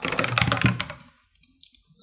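Fast typing on a computer keyboard: a dense burst of keystrokes for about the first second, then a few light, scattered key presses.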